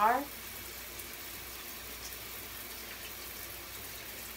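Steady, even hiss of water running in a tiled shower.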